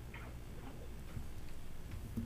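A few faint, scattered clicks and light ticks over a low, steady room hum.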